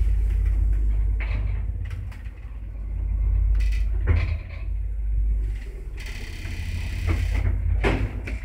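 ZUD passenger lift running with a low rumble, with several sharp clicks and a heavy knock about four seconds in, then its doors sliding and clattering with a run of clicks near the end as the car reaches the landing.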